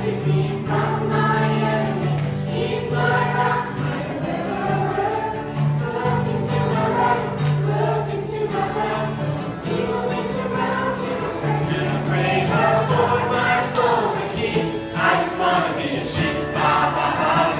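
A group of children singing a Christian song together, with guitar accompaniment holding steady chords beneath the voices.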